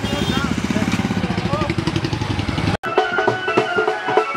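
Several motorcycle engines running at low speed, with men's voices over them. Just before the end the sound cuts out for an instant and gives way to music with a drum beat and steady held notes.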